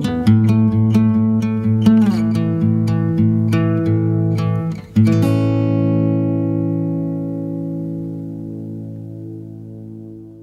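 Acoustic guitar picking a run of notes, then a final chord struck about halfway through that rings out and slowly fades away, as at the end of a song.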